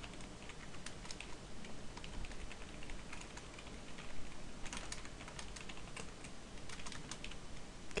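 Typing on a computer keyboard: a run of quick, uneven key clicks as a line of code is entered.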